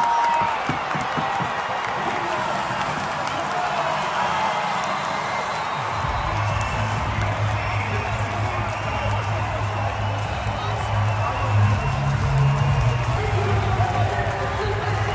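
Arena crowd cheering, whooping and clapping a volleyball win, over loud music from the arena's sound system. About six seconds in, the music's heavy bass beat comes in.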